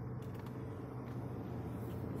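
Car air-conditioning blower and idling engine running with a steady hum inside the cabin, with a few faint clicks from the dashboard controls early on as the fan is turned up.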